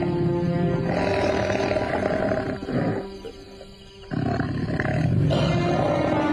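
Tiger roars, a drama sound effect, heard twice with a brief lull between them, over dramatic background music.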